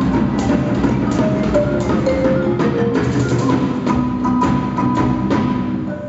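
Live percussion ensemble playing: drum kit, marimba and hand drums struck together in a dense rhythm, with pitched marimba notes over the drums.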